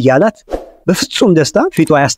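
Speech only: a person talking rapidly, with a brief soft noise about half a second in.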